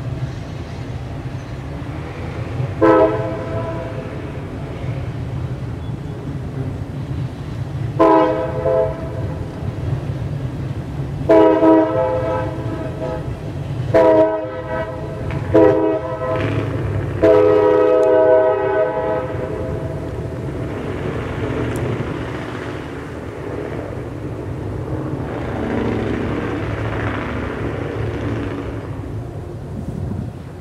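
An approaching diesel locomotive sounds its horn in six blasts: two long ones spaced several seconds apart, then a longer one, two short ones and a final long one. Under the horn, freight cars roll past with a steady low rumble.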